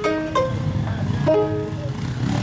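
Kologo, the Frafra two-string calabash lute, plucked in three short groups of bright notes that ring briefly and fade, over a steady low accompaniment.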